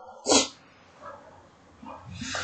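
A man coughs once, a single short burst.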